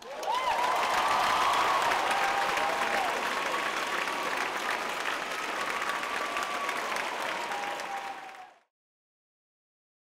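Audience applauding, with cheering whoops rising and falling over the clapping; it cuts off suddenly about eight and a half seconds in.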